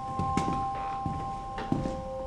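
A few soft, irregular footsteps on a hard floor, under faint background music of steady held notes.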